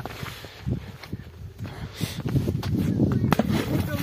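A few sharp knocks over a low rumble: a stone thrown onto a frozen pond to try to break the ice, striking the ice.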